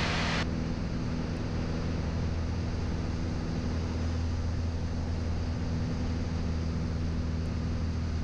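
Piper Cherokee 180's four-cylinder Lycoming engine and propeller droning steadily in flight, heard inside the cockpit under a steady hiss of airflow and cabin noise.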